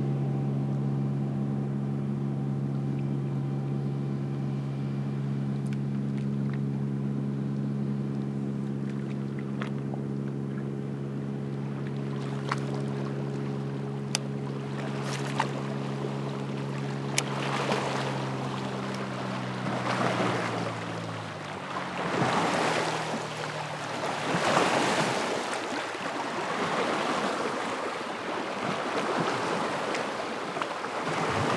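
A motorboat's engine drones in a steady tone, then drops in pitch and fades out about twenty seconds in as it passes. From about seventeen seconds its wake arrives, with waves splashing and slapping against the kayak, and a few sharp knocks come just before.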